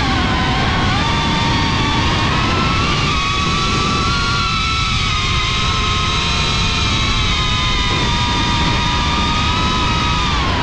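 FPV quadcopter's electric motors whining over propeller and wind rumble, the pitch drifting up and down slightly with the throttle.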